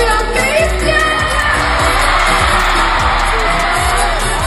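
Live concert audio: a singer with a band playing behind, recorded from the audience.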